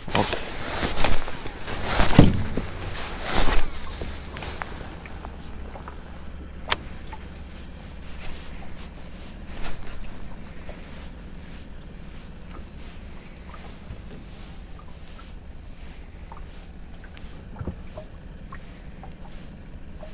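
Baitcasting reel being cast and retrieved: a loud rush of line running off the spool in the first few seconds, a single sharp click around seven seconds in, then the reel wound in steadily with faint ticking.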